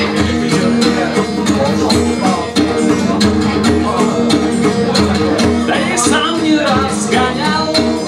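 Acoustic guitar strummed in a steady rhythm, chords ringing between the strokes: the instrumental opening of a song.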